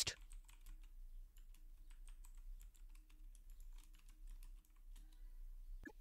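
Typing on a computer keyboard: faint, quick, irregular keystrokes.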